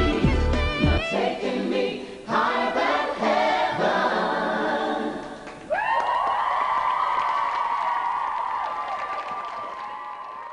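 Lead singer and a backing vocal group singing unaccompanied at the close of a pop song, after the instrumental backing drops out about a second in. They finish on one long held chord that slowly fades.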